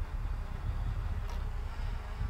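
Low, uneven rumble of wind buffeting the microphone outdoors, with no distinct event.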